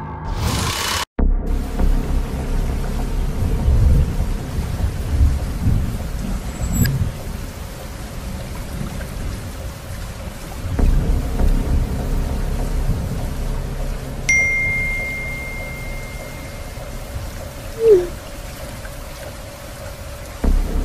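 Rain and rolling thunder sound effect under a low, dark ambient drone, after a short whoosh that cuts off sharply about a second in. A single held high tone enters about two-thirds of the way through, and a short falling blip sounds near the end.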